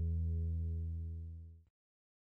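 Guitar holding the low final chord of the piece, a steady sustained tone that fades away and stops about one and a half seconds in.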